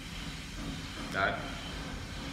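A man says one short word about a second in, over a steady low background hiss; no other distinct sound.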